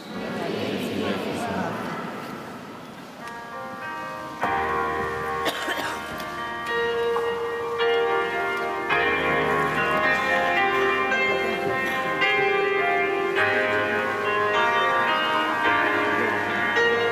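A keyboard instrument playing sustained chords that change about once a second, entering about three seconds in as the introduction to a worship song. Before it there is a brief spell of jangling ringing.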